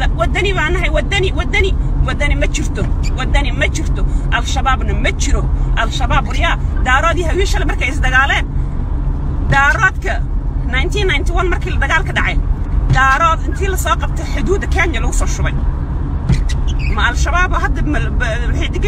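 A woman talking at length inside a car, over a steady low rumble of engine and road noise.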